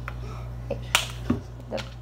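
One sharp click about halfway through from a plastic flip-top bottle cap, followed by a softer knock, over a steady low hum.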